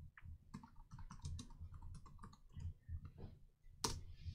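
Faint typing on a computer keyboard: a run of quick, uneven keystrokes, with one louder key press near the end.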